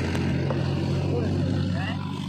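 An engine running steadily at an even speed, with faint voices in the background.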